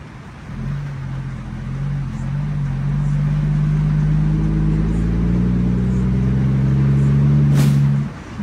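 Heavy truck's diesel engine heard from inside the cab, pulling and steadily growing louder with its hum rising slightly in pitch, with a brief click just before it dips at the end.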